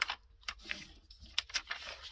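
A sheet of paper being handled and folded on a tabletop: a few sharp paper clicks and taps with a soft rustle between them.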